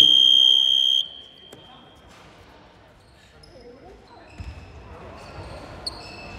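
Gym buzzer sounding once, a loud, steady high tone lasting about a second that rings on briefly in the hall before dying away.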